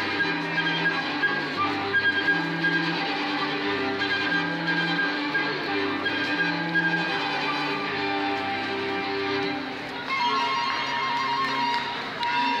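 Small classical ensemble of flute, violins and cello playing, recorded through a Nokia N900 phone's microphone. Sustained low cello notes come about every two seconds beneath the bowed violin and flute lines, and the melody moves higher near the end.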